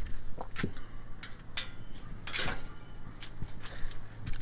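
Metal garden gate being unlatched and swung open: a series of short metal clicks and knocks.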